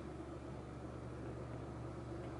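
Steady low hum of a running desktop PC's fans, even throughout with no change.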